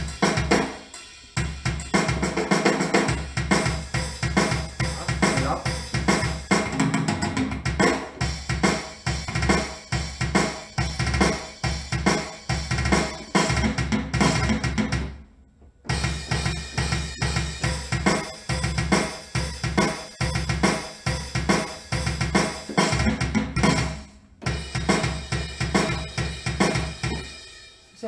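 Sampled rock drum kit from AIR Music Technology Ignite's Rock Kit playing a fast pre-recorded rock/metal beat at 140 BPM: kick, snare and cymbals. It stops briefly about halfway through and again about three-quarters through as new phrases are triggered from the keyboard.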